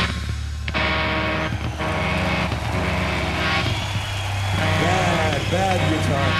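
Live rock band's stage sound with the electric guitar cut out: a steady low drone from the bass and amplifiers. In the second half a voice slides up and down in short arcs.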